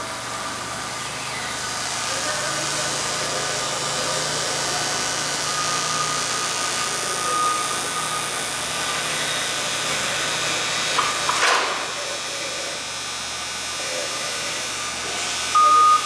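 Forklift engine idling steadily, with one brief sharp knock about eleven and a half seconds in.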